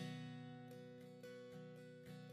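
Acoustic guitar playing softly: a chord strummed at the start and left ringing, followed by a few light strums, as the instrumental lead-in to the chorus of a worship hymn.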